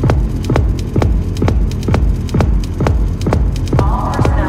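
Electronic dance music with a steady kick drum at about two beats a second over a bass line. A synth melody comes in near the end.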